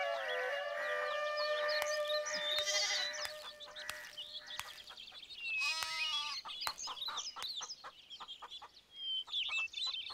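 Rural ambience of many small birds chirping, with a single held background-music note fading out over the first few seconds. About six seconds in there is a short farm-animal call, fowl- or goat-like.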